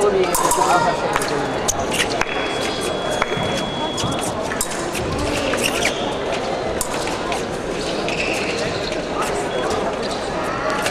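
Fencers' feet tapping and stamping on a metal piste, heard as many sharp clicks, over the steady chatter of a crowded sports hall.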